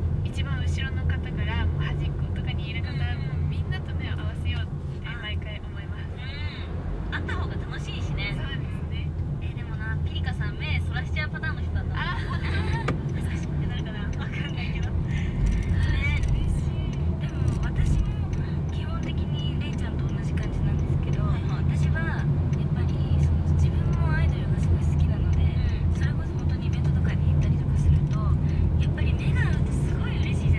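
Steady low engine and road rumble heard inside a moving car's cabin, with faint, indistinct voices talking over it.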